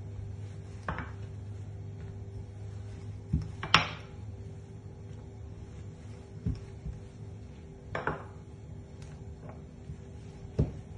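Scattered knocks and taps on a wooden cutting board as dough is pressed out by hand and rolled with a wooden rolling pin. The loudest knock comes a little under four seconds in, over a low steady hum.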